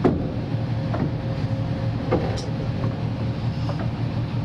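A tour boat's engine running with a steady low hum as the boat pushes through floating glacier ice, with a few sharp knocks of ice against the hull, the loudest right at the start.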